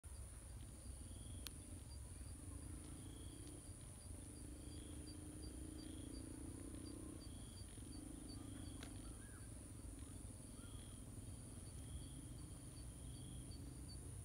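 Faint outdoor ambience of insects chirping. There is a steady high whine and a regular high pulsing about three times a second, with softer chirps repeating under a second apart, over a low distant hum.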